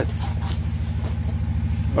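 An engine idling steadily: a low, even hum with a fast regular pulse.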